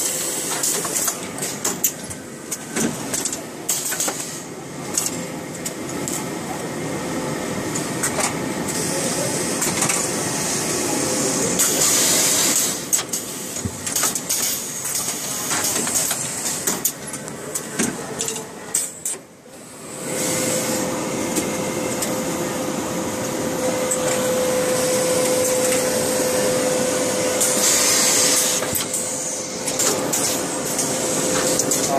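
Automatic garment bagging machine at work: short hisses of air and repeated clicks of its mechanism as it wraps shirts in poly film, over a steady hum and the noise of a large hall.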